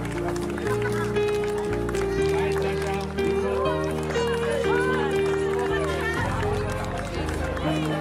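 Music of held chords that change every second or so, with voices over it.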